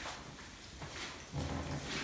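Quiet clicks and rustles of hands handling fried chicken at a table, with a low hum late on.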